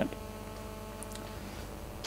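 Steady electrical mains hum: a set of even, unchanging tones with a faint click about a second in.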